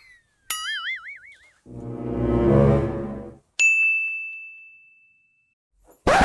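Comedy sound effects: a short wobbling boing, then a low swelling rumble, then a single bright bell ding that rings on and fades out.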